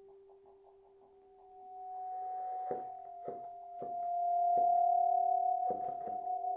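Bassoon with live electronics playing long held notes. The notes begin very quiet with a fluttering pulse, then swell to a loud sustained tone. About five short, sharp knocks cut across them in the second half.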